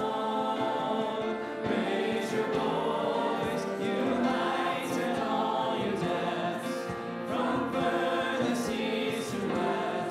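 Church worship singing: singers at microphones and a congregation sing a praise hymn together with band accompaniment, with short crashes marking the beat every second or two.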